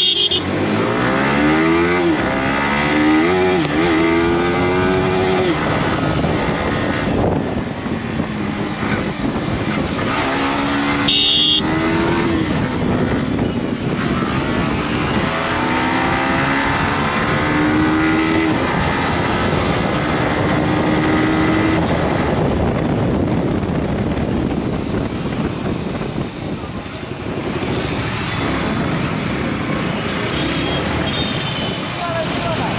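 Yamaha R15M's single-cylinder engine accelerating hard from a standing start. Its pitch rises and drops back at each upshift through several gears, then it holds a steady note for a few seconds before easing off. Wind and road noise rush under it.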